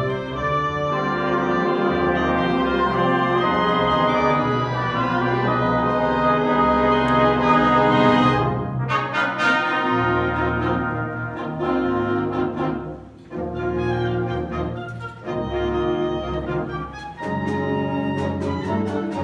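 A concert band playing, brass to the fore: long held chords for about eight seconds, then shorter, accented chords with brief breaks between them.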